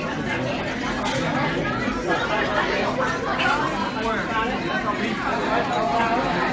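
Chatter: several voices talking continuously over one another, none of it clearly picked out.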